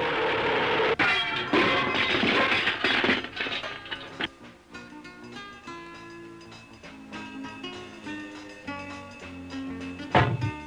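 Clattering, crashing sound effect of a toy-like old car falling to pieces: a rattling noise, a sharp knock about a second in, then several clatters, dying away by about four seconds. A short plucked-string music cue follows.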